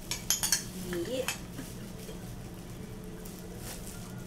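A spoon clinking and scraping against a jar and dishes while pizza sauce is scooped and spread: a quick cluster of sharp clinks in the first half second and a couple more around a second in.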